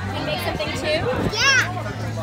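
Children's voices chattering and playing, with one child's high-pitched call about a second and a half in.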